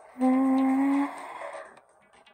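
A woman humming one steady held note for about a second, which then fades away.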